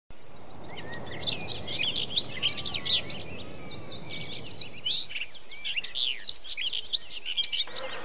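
Several birds chirping and singing at once, a dense run of quick, overlapping chirps over a faint background hiss.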